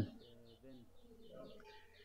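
Faint bird calls in the background: a rapid, even series of short high chirps, about five or six a second.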